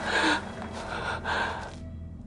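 A man gasping for breath: three heavy, hurried breaths in quick succession, fading near the end.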